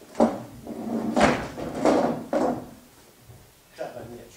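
Wooden chair moved across a stage floor, with a few knocks and scrapes; the heaviest knock comes about a second in.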